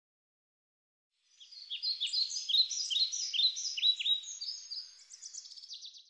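A songbird singing: quick, high notes sweeping downward, three or four a second, fading in about a second in. Near the end they turn into a faster trill, and the song cuts off abruptly.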